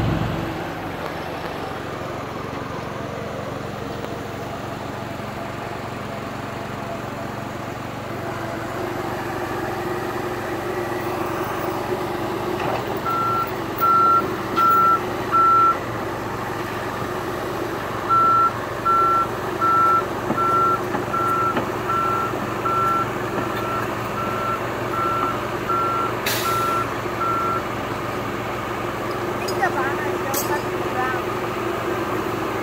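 John Deere tracked excavator's diesel engine running steadily while its travel alarm beeps about once a second as it tracks: three beeps around the middle, then a run of about a dozen that grows fainter.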